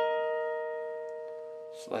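Electric guitar double stop, the B string at the 16th fret and the G string at the 15th picked together. The two notes, a fourth apart, ring on and slowly fade. A spoken word comes in near the end.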